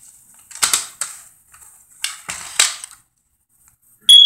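A plastic CD jewel case being handled and snapped shut: several sharp plastic clicks and clacks over the first three seconds, then quiet.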